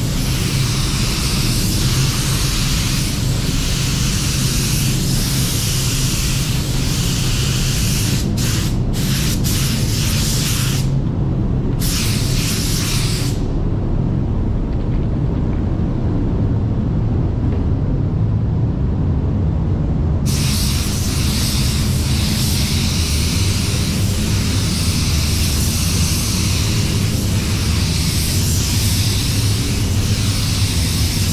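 Gravity-feed spray gun hissing as it sprays clear coat, with a steady low rumble under it. The hiss breaks off briefly a few times around eight to twelve seconds in, then stops for about seven seconds in the middle before starting again.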